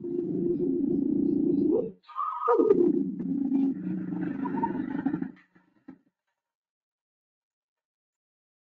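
Recorded vocalisations of a mating pair of lions: two loud, harsh roaring calls. The first lasts about two seconds. The second starts high, drops steeply in pitch and runs on about three more seconds, stopping about six seconds in.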